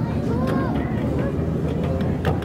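A ride train running with a steady low rumble, with indistinct voices over it.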